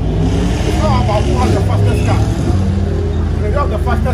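Car engines idling with a steady low rumble, under men's voices talking.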